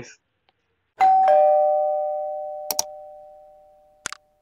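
Two-note doorbell-style ding-dong chime sound effect: a high ding, then a lower dong a moment later, both ringing out and fading over about three seconds. A quick pair of mouse-click sounds comes partway through.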